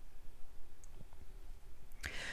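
Low room tone with a faint hum and a few soft, faint clicks, one about a second in.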